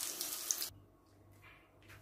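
Chicken kebab skewers sizzling in a shallow-oiled frying pan: a steady frying hiss with one small click, stopping suddenly under a second in, followed by near silence.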